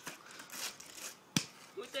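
One sharp crack from a cheap skateboard's broken wooden deck under a rider's weight on concrete, about a second and a half in.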